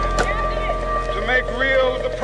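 A man's voice orating in a recorded speech, with steady held tones of background music underneath.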